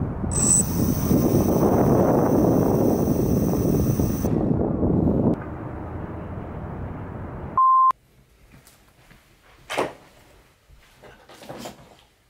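Rushing wind noise on the microphone for about five seconds, with a thin high-pitched whine over the first four, then dying away. A short single beep at one steady pitch comes about two-thirds of the way through, followed by quieter sound with one brief click.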